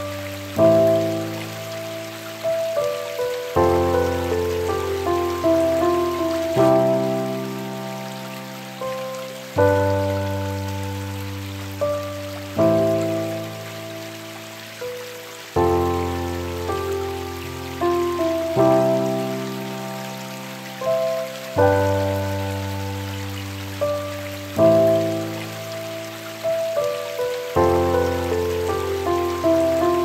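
Slow, calm piano music, a new chord struck about every three seconds and left to fade, over a steady hiss of rain sound.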